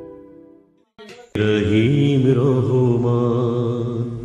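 Background music: a gentle instrumental piece fades out in the first second. After a brief gap, a chanted vocal over a steady low drone starts abruptly and loudly.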